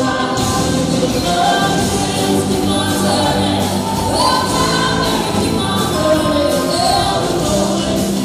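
A live band playing a song with sung vocals over a steady drum beat.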